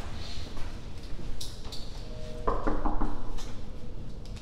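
Several quick knocks on a room door about two and a half seconds in, over a low steady rumble.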